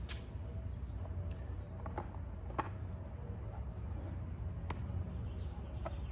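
Plastic golf discs being handled and set into a cart pouch: a handful of short, sharp clicks and knocks, the loudest a little over two and a half seconds in, over a steady low rumble.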